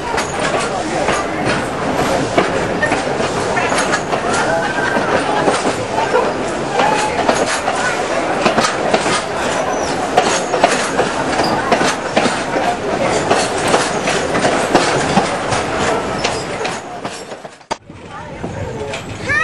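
A 3 ft 6 in narrow-gauge passenger train heard from on board: a steady running rumble with frequent clicks as the carriage wheels roll over the rail joints. The sound breaks off suddenly near the end.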